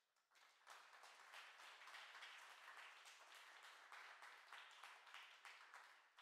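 Audience applauding. The clapping builds within the first second and then holds steady.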